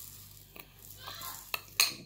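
Brown sugar pouring softly from a small glass bowl into a plastic bowl, with a small click and then a short, sharp knock of the glass bowl against the bowl near the end.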